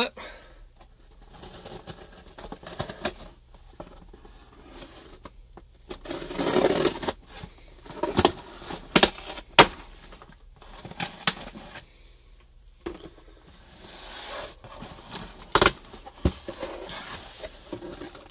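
A taped cardboard shipping box being cut open and unpacked by hand: irregular scraping, tearing and rustling of tape and cardboard flaps, with several sharp clicks and knocks, and plastic packaging crinkling near the end.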